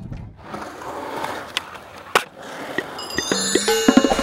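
Skateboard wheels rolling on concrete with a sharp clack about two seconds in, then an intro jingle of bright ringing tones starting near the end.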